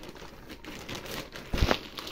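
Plastic bags crinkling as they are handled, with a louder rustle about one and a half seconds in.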